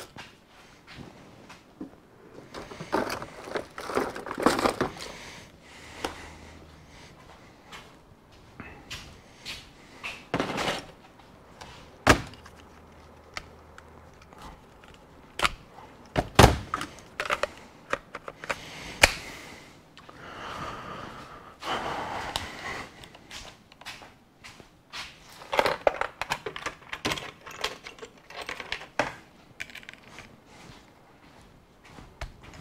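Scattered knocks, clicks and clatters of tools and objects being handled, picked up and set down on a hard surface, coming in bursts. A few sharp single knocks stand out in the middle, the loudest about two-thirds of the way through.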